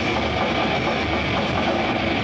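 Metal band playing live: distorted electric guitars and bass form a dense, unbroken wall of sound, heavily saturated in an amateur recording made from the crowd.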